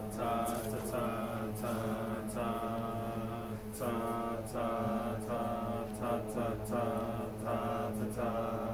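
A class of mixed voices singing their parts together on a repeated "ta" syllable, in short notes to a steady beat, with several pitches sounding at once.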